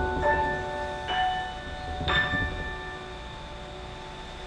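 Vianna grand piano playing a few last high notes and chords, struck about once a second and left to ring out and fade away.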